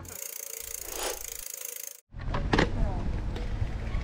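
A hissing whoosh sound effect that swells about a second in, then cuts off abruptly. After a brief silence come wind rumbling on the microphone and voices.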